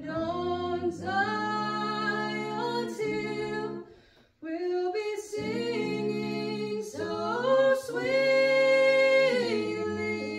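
A small group of men and women singing a hymn unaccompanied, in harmony, holding long notes, with a brief pause for breath about four seconds in.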